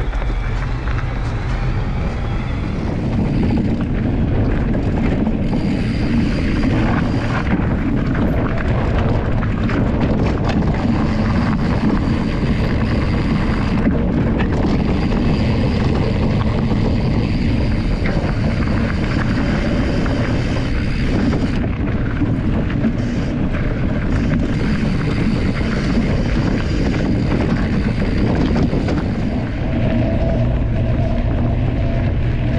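Wind buffeting the microphone of a handlebar-mounted action camera, with the rumble of a knobby fat tyre rolling over a dirt and gravel trail; a loud, steady noise with a deep rumble throughout.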